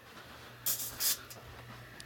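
Faint steady low hum, with two short hisses about two-thirds of a second and one second in.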